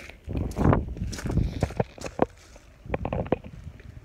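Footsteps on leaf-strewn grass, an irregular run of short knocks and rustles, mixed with the bumps of a handheld phone being swung about.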